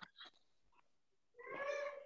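A single brief, faint, high-pitched voice-like call lasting well under a second, about one and a half seconds in, heard over a video call.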